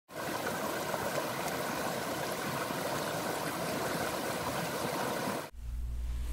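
Rocky creek running over small cascades, a steady even rush of water that cuts off abruptly about five and a half seconds in, leaving a low steady hum.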